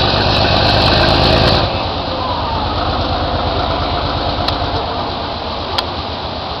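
A moving train's steady engine and running rumble, heaviest for the first couple of seconds and then easing, with a couple of short clicks near the end.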